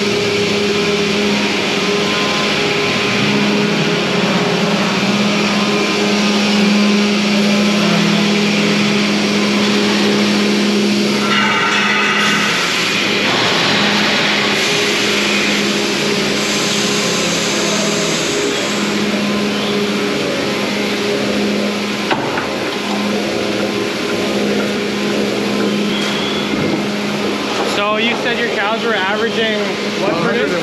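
Milking parlour machinery running: a loud, steady mechanical hum with a low drone throughout.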